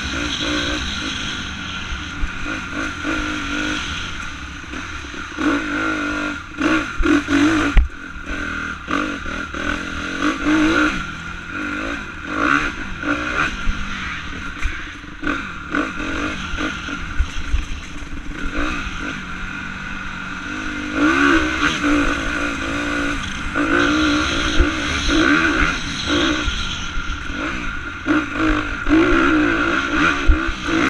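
2016 Honda CRF250R's single-cylinder four-stroke engine revving up and down again and again as the dirt bike is ridden along a trail, with knocks and clatter from the bike over bumps, the sharpest about eight seconds in.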